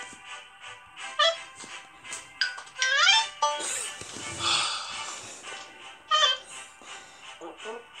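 Background music from an animated story app, with short cartoon voice calls that slide up in pitch and a noisy sound effect near the middle.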